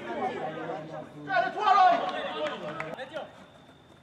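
Voices calling out across an open football pitch during play, with one loud, drawn-out shout about a second and a half in; the calling dies down near the end.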